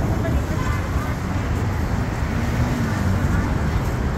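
Street traffic noise with a heavy low rumble of wind on the microphone, and faint voices of passers-by in the background.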